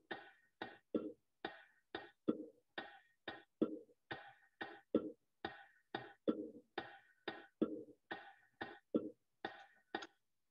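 Computer playback of the Malfouf rhythm on bongos at 90 beats a minute: a very simple rolling beat of deeper and higher strokes, about three a second, repeating bar after bar.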